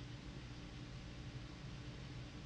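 Quiet room tone: a faint, steady low hum with hiss, and no distinct sound events.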